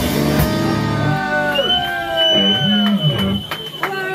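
Live rock band finishing a song: the drums and full band stop about a second in, leaving a ringing guitar chord under shouts and whoops from the audience.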